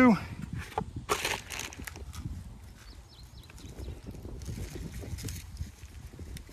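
Hands planting a potted lily: a brief rustle about a second in as the plastic nursery pot is pulled off the root ball, then soft scraping and patting of soil as the plant is set into the hole, under a low rumble.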